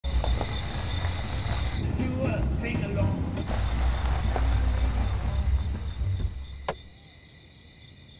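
A car driving slowly over a dirt track, its engine and tyres making a deep rumble that fades out as it comes to a stop about six seconds in, followed by a single sharp click.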